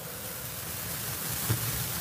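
Steady hiss of background noise with a faint low rumble under it, and a small soft bump about a second and a half in.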